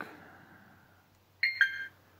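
Two short electronic beeps in quick succession about one and a half seconds in, the second slightly lower in pitch. They come from a Flysky Noble Pro radio transmitter as its touchscreen is tapped to make a menu selection.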